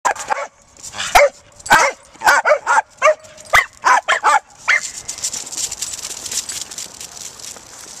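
Small dog barking rapidly, about a dozen short, high barks in quick succession, then stopping near the five-second mark. Quick patter of running footsteps on pavement follows.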